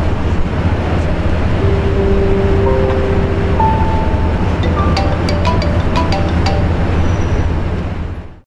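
Loud city street traffic noise with a steady low engine rumble. A few held tones and a run of short clicking notes come in over the second half.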